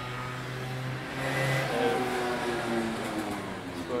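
A passing motor vehicle: its engine sound swells and then fades, loudest about two seconds in.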